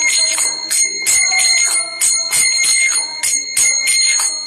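Karatalas (small brass hand cymbals) struck in a steady rhythm, about three strokes a second, each clash leaving a high metallic ringing that carries over into the next.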